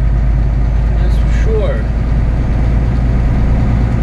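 Steady low drone of a semi truck's diesel engine and tyres, heard inside the cab while driving, with no change in pitch.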